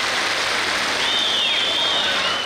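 A large audience applauding at the end of a song. Two high whistles sound over it, one about a second in that falls away at its end, and another near the end.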